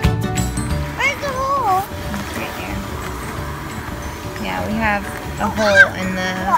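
Music cuts off in the first second, then young children call out in high voices that glide up and down over steady background noise, twice, the second time louder near the end.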